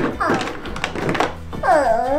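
Hard plastic toy food and utensils knocking and clacking together in a toy kitchen sink, several light knocks in the first half. Near the end comes a baby's short, high, wavering vocal sound.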